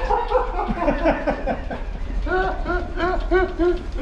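Two men laughing heartily, ending in a run of about six quick 'ha' pulses roughly four a second, over a steady low hum.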